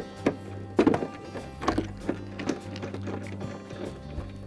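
Background music, over which come about four sharp clicks in the first two and a half seconds as a screwdriver drives a screw inside a refrigerator ice bin's auger drum.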